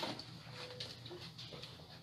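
Quiet room tone with a few faint handling noises as headphones are put on.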